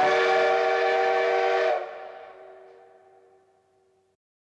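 A held, whistle-like chord of several steady tones with a hiss over it, sounding loud for about two seconds, then fading away to silence.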